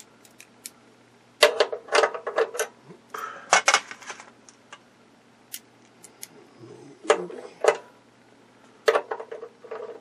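Metal wrench sockets clinking and clattering as they are picked out and tried for size on a bolt, in several short bursts of clicks with quiet gaps between.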